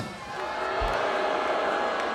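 Large festival crowd calling out and cheering, many voices blended into a steady mass that swells in the first half second. A short low thud comes a little before one second in.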